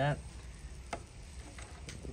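Two short light clicks about a second apart from handling at a car's under-hood fuse box, where the fuel pump relay fuse has just been pulled, over steady low background noise.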